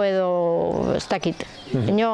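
Only speech: a woman talking, drawing out a long syllable at the start.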